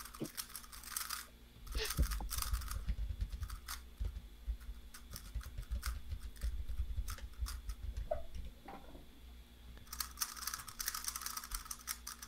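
Plastic 3x3 speed cubes being turned by hand: irregular runs of quick, light clicks and clacks, densest near the end.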